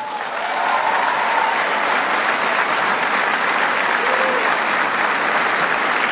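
Large conference audience applauding steadily, with a few faint voices in the crowd.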